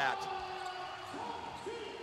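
Basketball arena background during play: a steady hum of crowd and court noise, with a faint distant voice in the second half.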